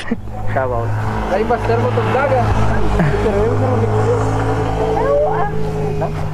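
Motorcycle engine idling steadily, its note stepping up slightly about five seconds in.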